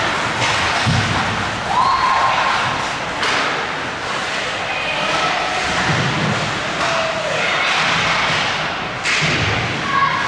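Ice hockey game play in an arena: repeated dull thuds and sharp knocks from sticks, puck and the boards, with a few short shouted calls over the hall's steady din.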